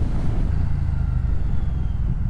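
Moto Guzzi V100 Mandello's 1042 cc 90-degree V-twin running steadily at low revs as the motorcycle rolls at low speed, with a faint whine that falls slightly in pitch.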